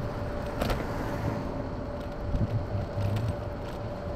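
Rumbling road and wind noise from an electric scooter on the move, with a steady faint whine and a sharp click or rattle less than a second in.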